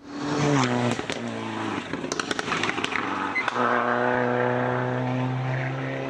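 Rally car engine at high revs on a stage: its note drops as the driver lifts or shifts in the first two seconds, with a scatter of sharp pops and cracks. It then holds a steady note through the last couple of seconds.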